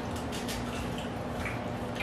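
Eating sounds: wet chewing of fried fish with a scatter of small, sharp clicks.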